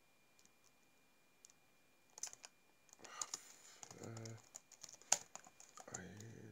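Faint typing and clicking on a computer keyboard, starting about two seconds in, as a web search is typed. There is a brief hummed voice sound just after four seconds in.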